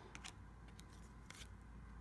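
A few faint swishes of Bowman baseball trading cards sliding off a hand-held stack as they are flipped through one by one.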